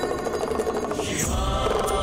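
Devotional background score with a chanted mantra over held tones, swelling about a second in.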